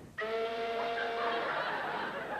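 A held, steady two-tone sound effect that starts abruptly when the bell is rung for the maid and lasts about a second. Audience laughter follows.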